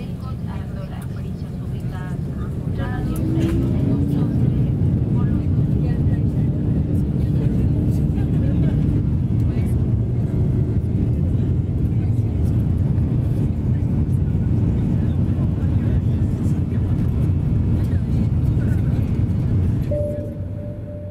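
A loud, steady low rumble like a vehicle running, with voices talking in the first few seconds. About three and a half seconds in, the rumble grows louder and a steady low hum joins it and holds.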